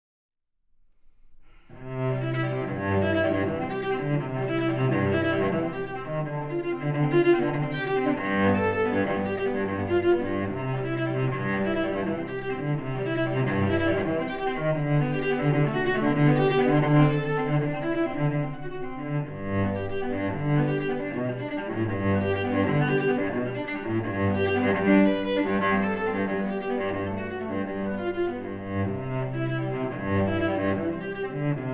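A 1769 Joannes Guillami cello, originally a small church bass later cut down, played with the bow. It starts after about a second and a half of silence and continues with full, deep low notes.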